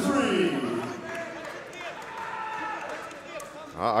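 Raised voices of people around the cage calling out, loudest in the first second and fainter after.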